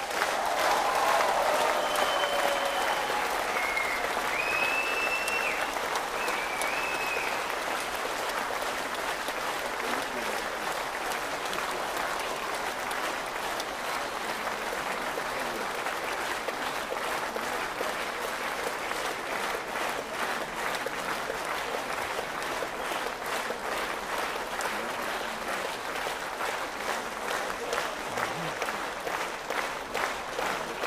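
A large concert audience applauding, loudest at the start and settling slightly lower.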